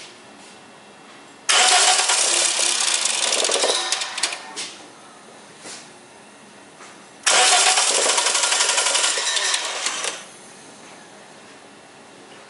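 A Toyota VVT-i engine with its valve cover off, camshafts and timing chain exposed, cranked twice by the starter for about three seconds each time without running on. The engine is hard to start, which the owner puts down to the intake manifold and the many parts taken off.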